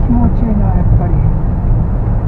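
Steady, loud low rumble of wind and road noise from a Honda S660 being driven with its roof off, with its engine running beneath.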